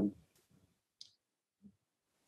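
Near silence in a pause between phrases of speech, broken by one short, faint click about a second in.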